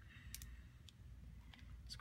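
Near silence with a few faint, sparse clicks from a mini hot glue gun being worked, its nozzle pressed against a plastic pacifier as glue is fed.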